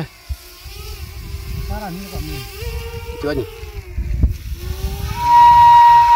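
Bamboo flute (suling) sounding one long, steady high note that starts about five seconds in and is the loudest sound. Before it, wind rumbles on the microphone.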